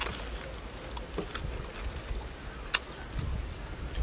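Steady low wind rumble on the microphone, with scattered faint clicks of a mouth chewing crunchy raw young kapok fruit; one sharper click comes a little before the three-second mark.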